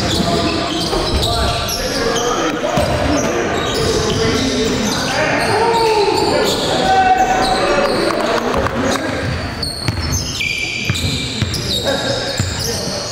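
A basketball bouncing on a gym's hardwood floor as it is dribbled during play, with players' voices calling out, all echoing in a large hall.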